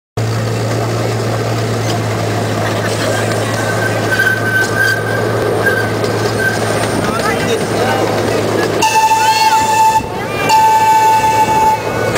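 Ride-on miniature park train running along its track with a steady low hum, then its whistle sounds about nine seconds in, in two long single-pitched blasts.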